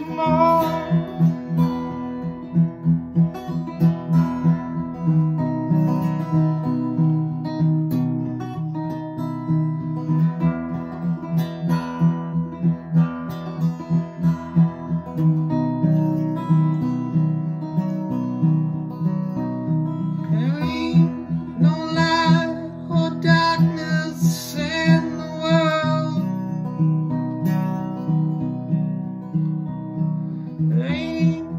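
Acoustic guitar strummed in a steady rhythm, with a man's voice singing briefly about two-thirds of the way through.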